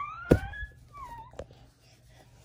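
A small child's drawn-out, high-pitched vocal sound rising in pitch, with a sharp knock about a third of a second in. A short falling squeak and a soft click follow about a second in.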